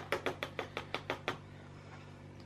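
A spoon tapping quickly and evenly against a small plastic paint pot, about seven light taps a second, to shake out a dollop of blue paint; the tapping stops just over a second in.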